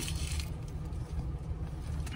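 Steady low rumble of a car idling, heard from inside its cabin.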